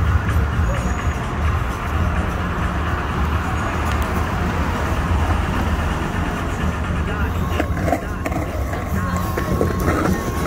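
Rental electric scooter wheels rolling over city pavement with a steady low rumble, under music and voices.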